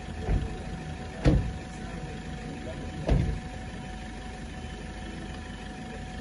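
Steady low rumble of a car engine idling close by, with three dull knocks; the loudest comes a little over a second in.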